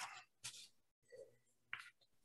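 Near silence, broken only by a few faint, brief noises.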